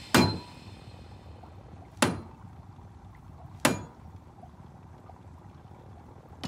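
Three sharp hits, a little under two seconds apart, each ringing out briefly. They come from the film's soundtrack.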